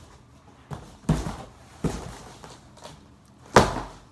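Cardboard box being struck with a handheld object to break it apart: about five dull smacking blows at uneven intervals, the loudest near the end.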